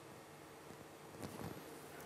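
Quiet room tone of a hall with a faint steady hum, and a faint soft noise a little over a second in.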